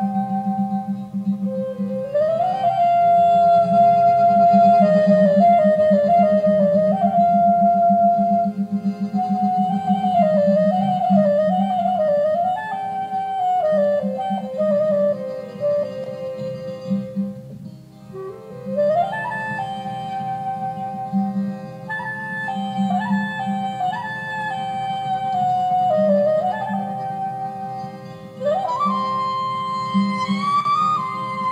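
Clarinet playing a solo melody with several upward slides into its notes, over a steady accompaniment with a low pulsing drone. There is a brief pause between phrases about two-thirds of the way through.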